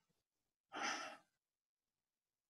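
A man's single short breath, a sigh-like exhale or audible inhale lasting about half a second, about a second in.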